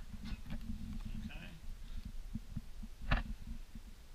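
Handling noise from the camera being moved and repositioned: a low rumbling with scattered knocks and rubs, the loudest knock about three seconds in.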